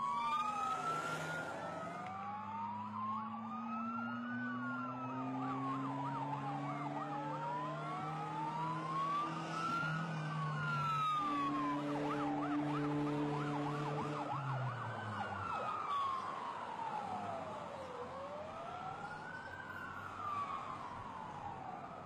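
Emergency vehicle sirens wailing, slowly rising and falling in pitch about every three seconds, with two sirens overlapping out of step. A lower droning tone underneath drops in pitch and fades about fifteen seconds in, as of a vehicle passing.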